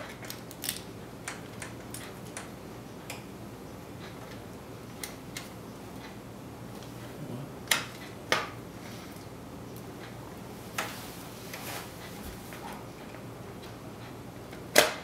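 Scattered light clicks and knocks of a graphics card being pushed and worked into a PCIe slot, with two sharper clicks about eight seconds in. The card is not seating easily.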